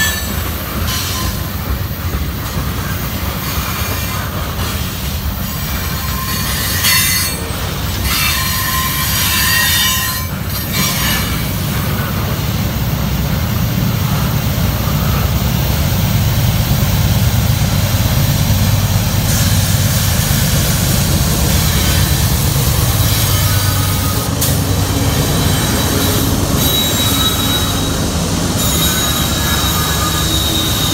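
Freight train autorack cars rolling past close by: a steady rumble of wheels on rail, with high-pitched wheel squeal coming and going.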